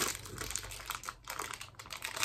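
Small clear plastic packet and blind-box minifigures handled in the hands: a run of light, irregular clicks and crinkles.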